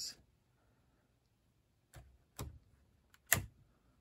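Four short, sharp plastic clicks in the second half, the loudest just past three seconds, from the hinged nacelle pylons of a 1:1000 USS Voyager plastic model kit being moved and snapping into position. The first couple of seconds are near silence.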